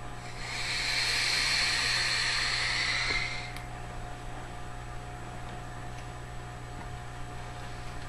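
SMOK sub-ohm vape tank with a triple coil, firing at 98 watts on 0.22 ohm, hissing for about three seconds as a long drag is drawn through it, then stopping.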